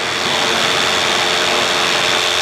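Paramotor engine and propeller running steadily in flight, a constant drone with a steady high whine.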